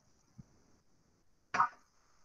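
A ceramic mug set down on a desk: a single sharp knock about one and a half seconds in, over faint steady hiss.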